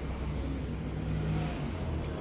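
Low rumble of a motor vehicle engine, building to its loudest about a second and a half in and then easing.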